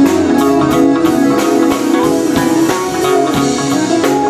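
A live jazz band playing: electric keyboard and electric guitar over a drum kit that keeps a steady cymbal beat.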